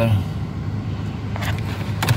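A 2017 Kia Sportage running at idle, a steady low hum heard inside the cabin, with a faint click about one and a half seconds in.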